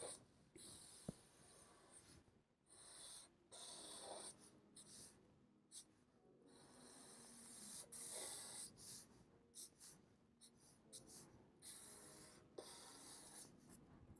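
Black felt-tip marker drawn across paper in faint, short scratchy strokes, one after another with brief pauses.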